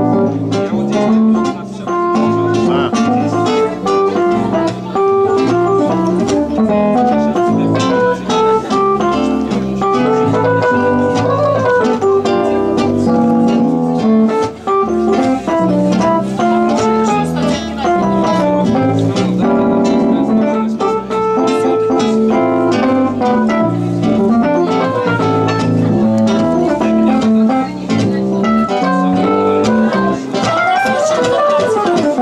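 A Roland electric keyboard with an organ-like sound and an acoustic guitar playing together in a jazz style, without a break.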